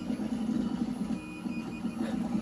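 Steady low whir of a FLSUN i3-clone 3D printer's cooling fans still running. A faint, short high tone comes a little past the middle.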